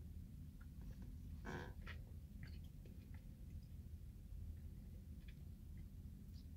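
Faint sipping, swallowing and mouth sounds from a man drinking from an aluminium energy-drink can, with a couple of soft gulps about a second and a half in and small lip clicks after, over a low steady hum.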